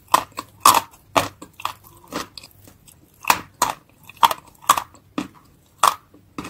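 Close-miked biting and chewing of wet grey Turkestan clay paste: a quick series of crunches, about two a second.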